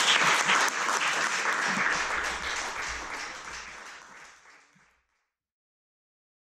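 Audience applause: many hands clapping at the end of a song, loud at first, then trailing off and stopping about five seconds in.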